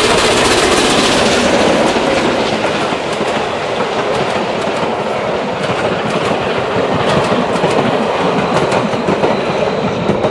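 Class 556.0 steam locomotive passing close, steam hissing by its wheels, then its passenger coaches rolling by with wheels clicking over the rail joints.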